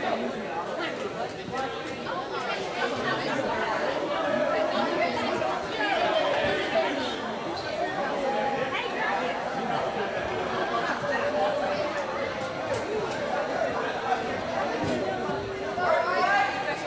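Many people talking at once in a gymnasium hall, a steady babble of overlapping voices with no single voice standing out.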